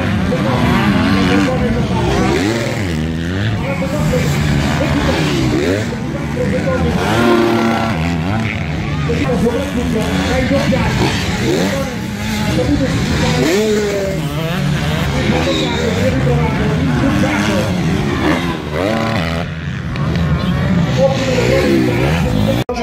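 Motocross dirt bikes racing on a sand track, several engines revving up and dropping back in pitch over and over as they accelerate and shift through the course.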